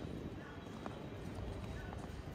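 Footsteps on stone cobblestone paving, a few light clicks about a second apart, over a steady hum of street ambience and distant voices.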